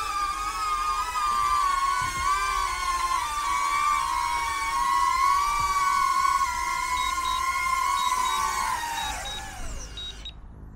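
Stock DJI Neo's motors and propellers giving a steady high-pitched whine that wavers in pitch as the drone descends and lands. Near the end the whine glides down and dies away as the motors spin down.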